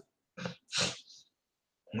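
Two short breaths from a man close to the microphone, about half a second and just under a second in.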